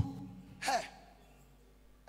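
A man's short, breathy sigh into a handheld microphone, once, about half a second in, followed by quiet with a faint steady hum.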